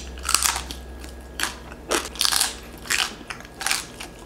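Close-up chewing and crunching of crispy roast pig skin (lechon), a string of irregular crunches several times over the four seconds.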